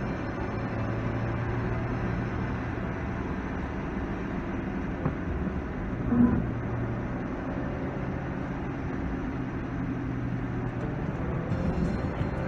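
Cabin noise of a Hyundai i20 driving on a wet road: a steady engine hum under the rush of tyres and road. There is a short, louder blip about six seconds in.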